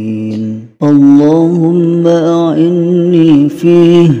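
A voice chanting an Arabic Ramadan supplication (doa) to a slow melody. A long held note breaks off just under a second in, and after a brief pause the prayer begins again with its next phrase.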